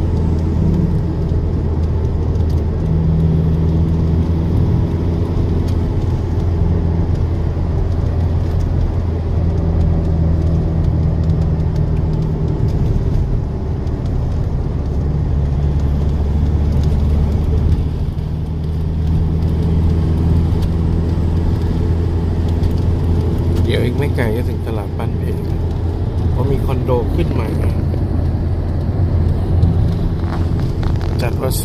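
Steady low drone of a vehicle's engine and tyres on the road, heard from inside the cabin while driving. A faint voice is heard briefly near the end.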